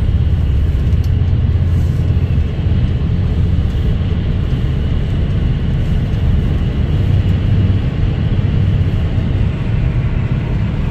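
Steady low rumble of a car cruising at highway speed, heard from inside the cabin: road and tyre noise with the car's running gear.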